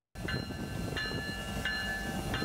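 Union Pacific SD70ACe diesel-electric locomotive running with a steady low rumble, its bell ringing in regular strokes about every 0.7 seconds.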